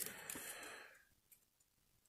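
Near silence: room tone, after a faint soft sound fades out within the first second.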